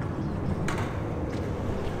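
Steady low outdoor rumble with a few faint sharp clicks.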